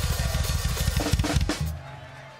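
Rock drum kit playing a fast, dense roll on the kick and snare, ending with a few hard hits about a second and a half in. A low sustained note rings on after it.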